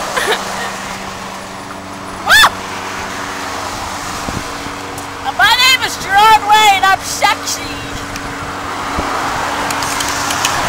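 A girl's voice giving a sharp high-pitched squeal about two seconds in, then a run of short wavering high yelps and squeaks around five to seven seconds in. Steady road traffic noise lies underneath, a little louder near the end.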